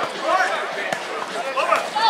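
Players' voices calling out across an outdoor volleyball court, with a few short, sharp smacks of hands striking the volleyball.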